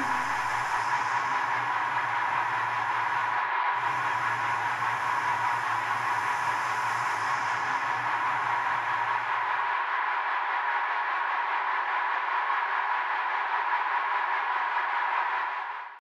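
A steady noisy electronic drone with no beat, strongest in the middle range. A low hum runs under it, breaks off for a moment a few seconds in and stops about two-thirds of the way through. The drone then fades out at the very end.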